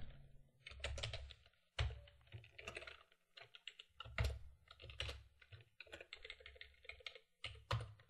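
Computer keyboard typing: quiet, irregular keystrokes with short pauses between runs of keys.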